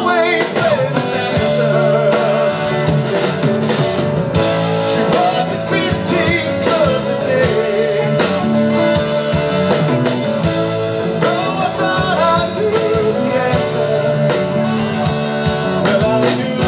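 A live band playing a song on electric guitars and drums, with a wavering, sliding melody line over a steady sustained backing.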